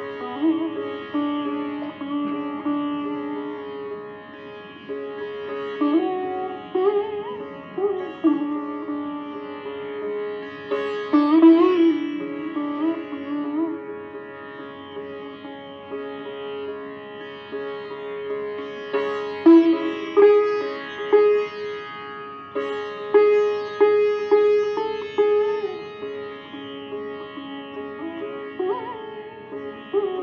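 Sitar playing raga Bhairavi: single plucked melody notes that slide between pitches, set over a steady ringing drone. There are stronger phrases about eleven seconds in and again around twenty seconds in.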